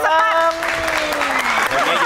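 Applause from the people on the studio stage, building from about half a second in, under a woman's long, drawn-out spoken word that falls slightly in pitch.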